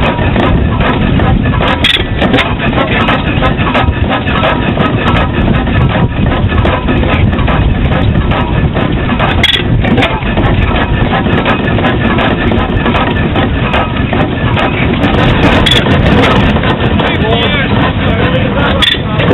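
Vintage Pattin Bros stationary engine running steadily, its loud, continuous mechanical noise mixed with people talking.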